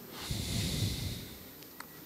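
A breathy rush of air close to a microphone, lasting about a second, then a faint click near the end.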